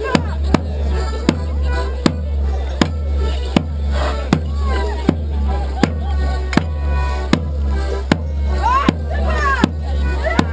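Border Morris dance music played live: a tune over a steady low drone, marked by a sharp regular beat about every three-quarters of a second.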